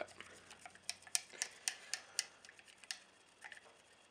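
Faint, light clicks of a stirrer tapping against a small glass cup of thick rutin-and-water paste as it is stirred, about four a second at the busiest, then sparser.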